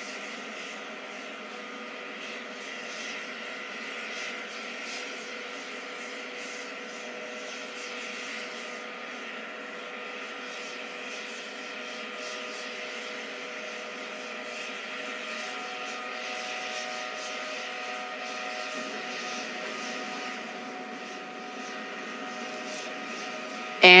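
A steady mechanical drone with a few held tones.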